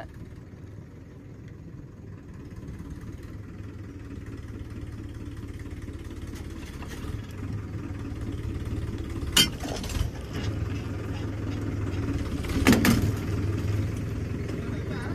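Powertrac tractor's diesel engine running steadily and growing gradually louder as the tractor tries to get out of deep mud. A sharp knock comes about nine seconds in, and a short loud burst near the end.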